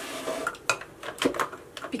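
A few light clicks and clinks of makeup containers and tools being handled and set down.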